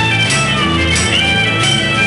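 Live acoustic pop-rock band playing an instrumental passage on acoustic guitar, bass guitar and violin, with held, sliding violin notes over the guitar and bass.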